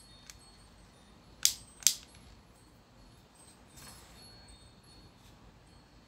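Two sharp, light clicks about half a second apart from a handheld plastic shower head being handled and adjusted, followed a couple of seconds later by a fainter click, over a quiet room.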